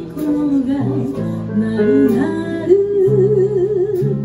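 A woman singing a jazz ballad, with a small band behind her: piano, electric bass guitar and drums. She ends on a long held note with wide vibrato over the stepping bass line.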